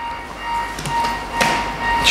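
Pause at a podium microphone: a thin steady whine and a low hum from the sound system, with one short tap on the podium about one and a half seconds in.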